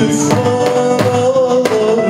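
Live band music: bağlama, keyboard and bowed strings hold a sustained melody over chords, with sharp drum-kit strokes landing every few tenths of a second.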